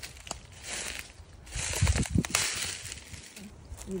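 Rustling and crunching in dry leaf litter and brush, as of footsteps, loudest with a few heavy thuds about two seconds in.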